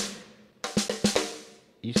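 Addictive Drums 2 Black Velvet sampled drum kit triggered from a MIDI keyboard: a quick run of snare hits about half a second in, after the previous hit rings out, dying away within a second. The hits come from several snare samples mapped to different keys and layered for a more realistic snare.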